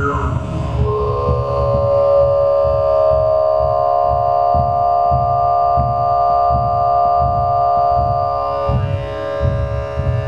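Throat singing (khoomei): one long held low note with a steady whistle-like overtone above it, starting about a second in and fading near the end. Under it, a heartbeat amplified through a contact microphone on the chest pulses low, about one to two beats a second.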